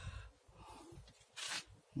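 Quiet room tone with one short, sharp breath about one and a half seconds in.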